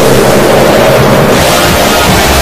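Heavily distorted, clipped soundtrack of an animated logo: a loud, dense, noisy blare with a low buzz under it, growing harsher and brighter about one and a half seconds in.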